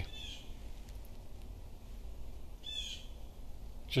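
Faint bird chirps, with a quick cluster of short calls about three seconds in, over a low steady hum.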